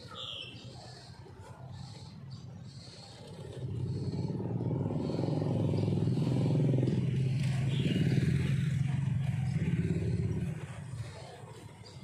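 A motor vehicle going by: a low engine rumble swells about three and a half seconds in, holds for several seconds, and fades away near the end.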